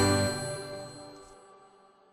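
Final chord of a birthday song ringing out and fading away, with bell-like tones dying to near silence over about two seconds.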